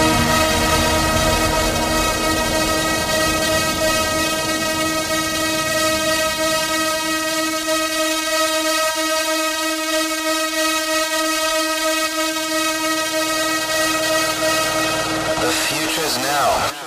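Hard trance breakdown: a sustained, horn-like synthesizer chord held steady. The low beat thins out in the middle and low notes return near the end, followed by a sweeping effect at the very end.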